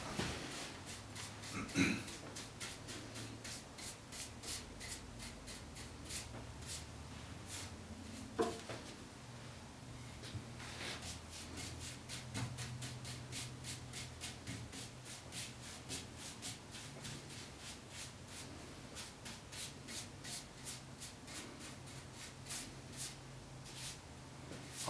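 Paintbrush stroking milk paint along white oak Windsor chair spindles: soft, quick brushing swishes, several a second, going on steadily.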